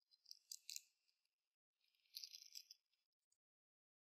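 Faint crinkling rustle of a small red object, paper or plastic, being turned over in the hands, in two short bursts about a second apart.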